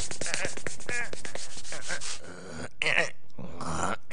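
Squeaky, animal-like vocal noises made by people's voices, fast and bending in pitch over a scratchy rubbing noise, with a brief drop about two seconds in before more squeals.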